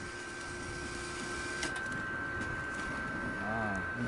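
Small electric blower fan of a portable fire pit running at full speed, a steady whir with a thin high whine, forcing air onto freshly lit wood for quick ignition. A few faint clicks come about one and a half seconds in.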